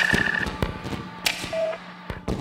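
Electronic IDM music: sharp glitchy clicks and ticks over thin synth tones, with a high held note in the first half second and a short lower blip about a second and a half in.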